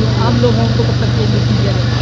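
Steady low machine hum, with faint voices chattering behind it.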